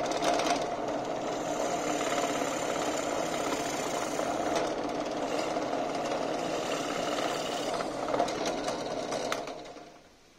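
Drill press running, its spiral bit boring into a wooden block, with a steady motor hum and a few sharp clicks late on; the sound fades out near the end.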